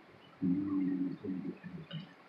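A man humming 'mm-hmm' with his mouth closed: one held low hum, then a few shorter ones.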